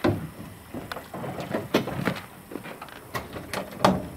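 The tilt hood of an old Kenworth conventional truck being pulled forward and opened: a run of knocks, clicks and creaks from the hood and its hinges, ending in a loud clunk near the end as it swings open.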